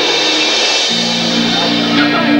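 Live rock band playing: electric guitar, bass guitar and drum kit with cymbals. The held low notes change to a new chord about a second in.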